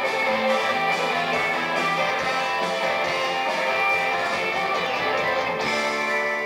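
Live rock band playing, heard from the audience: strummed electric guitars over drums. Near the end the drums drop out, leaving held chords.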